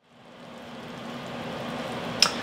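Steady kitchen background noise fading up: a hiss with a low steady hum under it.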